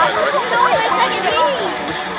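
Several children's voices chattering over one another, with music playing underneath.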